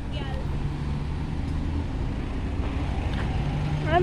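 Cars driving slowly past at close range, a steady low engine hum and road rumble, with brief faint voices.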